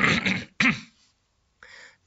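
A person clearing their throat harshly, ending about half a second in, then a short throaty grunt.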